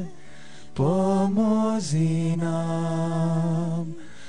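Slow devotional chant sung in long held notes. After a short pause at the start, the voice slides up into a phrase about a second in, then holds one long note until near the end.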